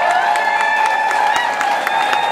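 Festival audience applauding and cheering as a dance number ends, with dense clapping and one long held cry from the crowd running over it.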